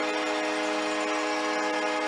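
Arena goal horn sounding steadily after a home goal: one sustained chord of several tones over crowd noise.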